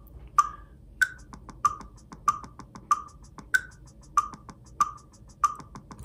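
Computer-generated drum playback from a rhythm-trainer app: a random 16th-note rhythm played on a kick drum sound over a steady click, strikes about every two-thirds of a second, every fourth one higher and louder, with fainter ticks between them.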